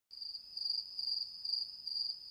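An insect trilling: one continuous high-pitched trill that swells and fades about twice a second.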